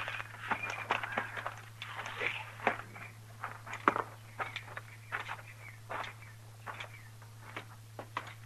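Radio-drama sound effect of footsteps on the ground, an irregular run of steps that thins out towards the end. A steady low hum from the old recording runs underneath.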